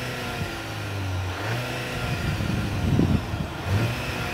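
Exhaust note of a Skoda Octavia RS 2.0 TSI petrol four-cylinder, heard from outside at the tailpipes. The engine runs near idle, its pitch falling and rising slightly, with a brief louder swell about three seconds in. It sounds quite ordinary.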